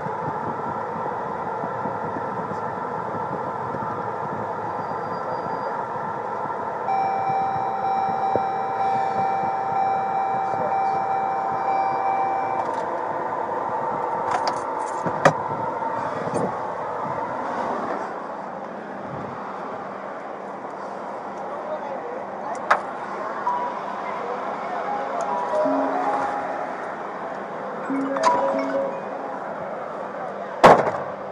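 Steady engine and road noise inside a Ford police car's cabin as it drives, easing off a little past the middle as the car slows. From about seven seconds in, a steady electronic tone sounds for roughly five seconds, and a few sharp clicks follow later.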